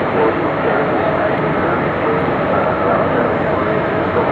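A press crowd's mixed voices talking over a steady, loud background noise with no pauses.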